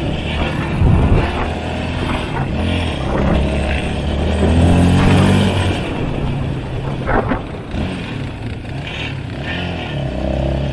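ATV engine running under throttle while riding over sand, its note rising and falling and loudest about five seconds in. A heavy thump comes about a second in and a sharp knock a little after seven seconds.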